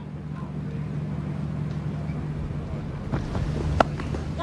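Steady low hum of outdoor ground ambience, then near the end one sharp crack as a cricket bat strikes the ball for a lofted shot.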